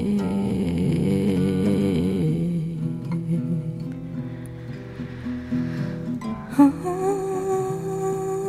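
Song with acoustic guitar: a woman's wordless humming over plucked acoustic guitar. The voice fades out about two and a half seconds in, leaving the guitar alone. A new held vocal note starts sharply about six and a half seconds in.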